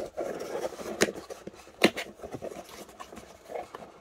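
An empty cardboard card-storage box being handled and its lid folded shut: cardboard scraping and rubbing, with two sharp taps about one and two seconds in.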